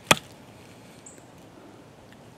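Boker Kalashnikov automatic dagger stabbed point-first into a wooden beam: one sharp thunk just after the start as the steel blade bites into the wood.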